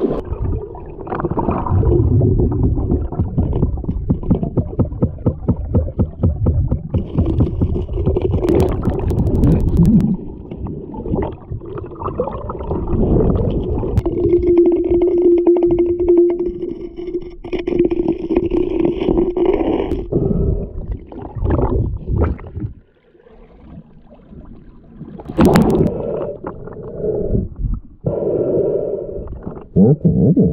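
Muffled underwater rushing of a strong creek current heard through a submerged camera, full of bubbling and crackling, starting with a splash as the camera goes under. A steady low hum runs for several seconds midway, and the rushing drops away briefly about three quarters of the way through before returning.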